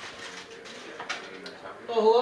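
Low, indistinct voices, with a light click near the start and another about a second in.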